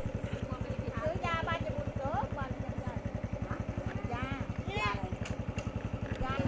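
A small engine idling close by with a rapid, even putter, and people's voices over it.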